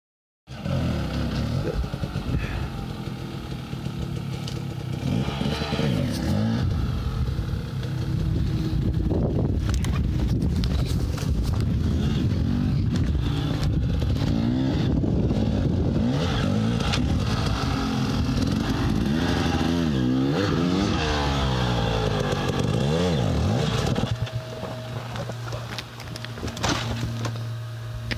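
Dirt bike engine revving hard in repeated rising and falling surges, then dropping to a steady idle a few seconds before the end.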